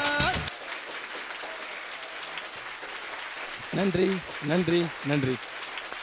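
Studio audience applauding, starting as the song music cuts off about half a second in.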